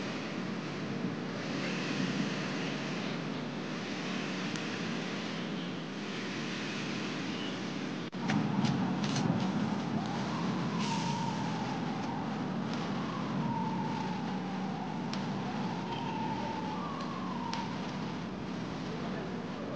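Outdoor ambience of a football training ground: a steady noise haze. After a cut about eight seconds in come a few sharp knocks and a faint distant tone that slowly wavers up and down.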